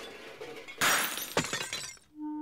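A shattering crash sound effect. A rush of noise builds to a loud burst about a second in, a second sharp hit follows about half a second later, and then it fades away.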